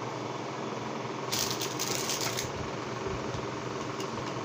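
Rattling, clicking and rustling of a foundation compact and its packaging being handled while someone works out how to open it, in a burst of about a second in the middle, over a steady background hum.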